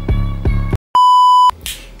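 Music with an even beat and bass cuts off just before the middle, followed by a single steady electronic beep of about half a second.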